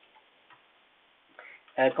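A few faint keystrokes on a computer keyboard as a command is typed.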